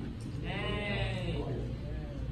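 A person's drawn-out, wavering vocal sound lasting about a second, starting about half a second in, over a low steady hum.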